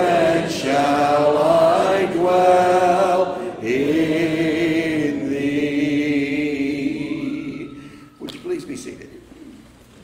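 A congregation singing a hymn a cappella: the last phrases end on one long held chord that fades out about eight seconds in. A few faint rustles follow.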